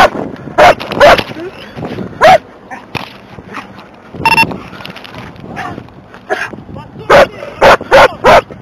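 A police K9 dog barking, loud single barks a second or so apart, with a lull in the middle. A short electronic beep sounds about four seconds in.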